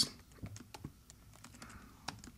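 Light keystrokes on a computer keyboard, a handful of separate taps while a word is typed.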